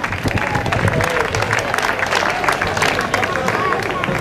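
A crowd applauding: a dense, steady patter of many hands clapping, with voices talking underneath.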